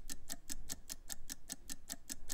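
Countdown-clock ticking sound effect running under a 30-second on-air timer: fast, even ticking, about nine ticks a second.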